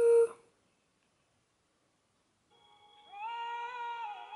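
A man softly humming one high held note with a slight waver. It comes in about two and a half seconds in, after a sung phrase ends at the very start and a short silence.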